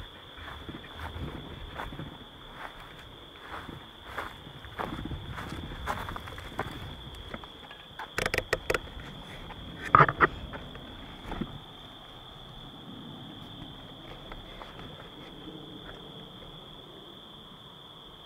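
Footsteps walking over rough ground with a steady chorus of crickets chirping. About eight seconds in comes a quick run of sharp clicks, then a louder knock near ten seconds and a smaller one after it. The footsteps then stop and only the crickets go on.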